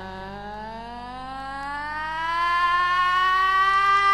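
A woman's singing voice holding one long wordless note that slides slowly upward and swells louder, without vibrato, over a low sustained chord from the band.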